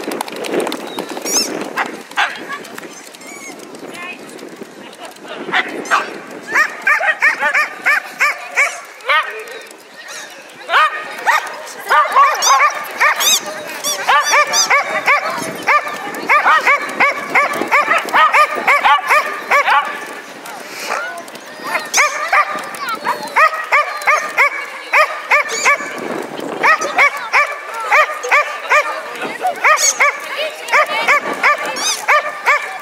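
A dog barking in rapid, high-pitched series, several barks a second, starting about six seconds in and keeping on with short breaks.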